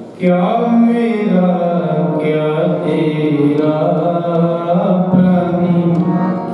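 Devotional Sikh hymn singing (kirtan): a voice chanting a melodic line over sustained instrumental accompaniment. A new phrase comes in just after the start.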